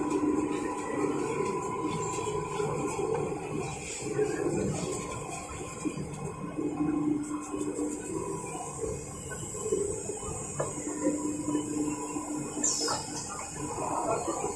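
Steady running hum and hiss of a K130D industrial guillotine paper cutting machine and its paper-handling equipment, with a low hum that swells and fades a few times.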